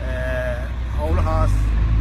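A person speaking over a steady low rumble that grows a little louder about a second in.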